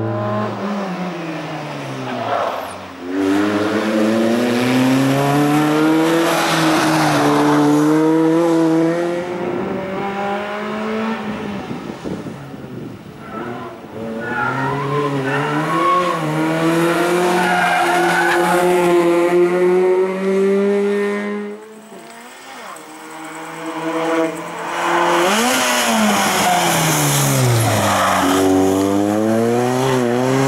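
Ford Puma race car's four-cylinder engine revving hard and backing off again and again as it weaves through a cone slalom, its pitch climbing and falling with each throttle change. There is a brief lull about two-thirds of the way through.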